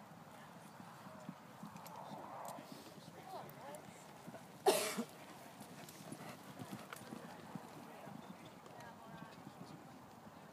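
Pony's hoofbeats cantering on a sand arena surface, a light, irregular patter. About halfway through comes one short, loud burst of noise, the loudest sound.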